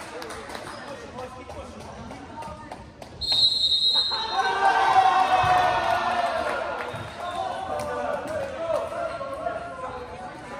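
A referee's whistle blows once for about a second, a little over three seconds in, then many players and spectators shout and cheer over the gym's echo for several seconds. A few volleyball thumps sound around it.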